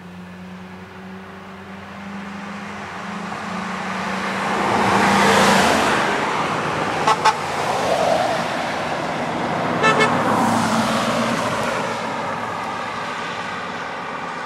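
Emergency vehicles passing close by one after another, the rush of engine and tyre noise swelling and fading twice. Each pass is marked by a quick double toot of the horn, one about halfway through and another a few seconds later.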